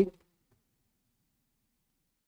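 The end of a man's spoken word right at the start, then dead digital silence for the rest.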